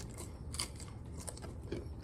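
Close-up eating sounds: a crisp tostada topped with shrimp aguachile crunching in a few sharp crackles as it is bitten and chewed.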